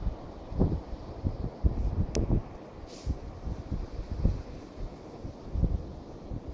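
Wind buffeting the microphone in irregular low gusts, with one sharp click about two seconds in.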